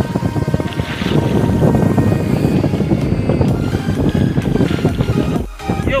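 Wind buffeting the microphone out on open water, a loud, rough rumble, with background music playing underneath. The sound drops out briefly near the end.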